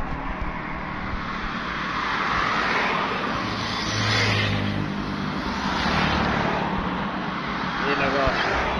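Road traffic passing close by: cars and motorcycles going by one after another, the tyre and engine noise swelling and fading several times, with a motorcycle-like engine hum as one passes about four seconds in.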